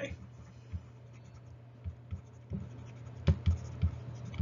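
Stylus writing on a tablet: scattered light taps and scrapes as words are handwritten, the sharpest tap about three seconds in, over a faint steady low hum.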